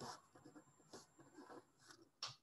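Faint scratching of a pen writing on paper, in a few short strokes.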